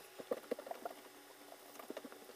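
Faint, scattered light clicks and ticks of hands handling a small plastic-wrapped cheese portion and its packaging.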